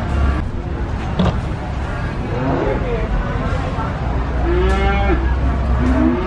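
Javanese cow mooing: a shorter call midway, then a longer one near the end.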